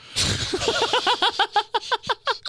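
A man bursting into laughter: a sharp rush of breath, then a rapid run of short 'ha' pulses, about eight a second.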